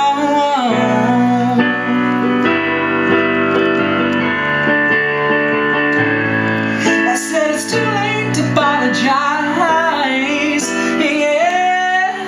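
A man singing wordless runs that bend in pitch over sustained digital piano chords, the voice easing off for a few seconds in the middle while the chords ring on, then returning.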